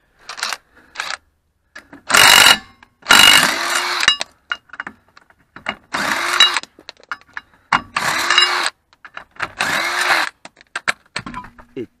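Cordless Parkside impact wrench run in about five loud bursts of under a second each, with a few shorter blips before them, undoing a car's wheel bolts. Each burst starts with the motor's pitch swinging up.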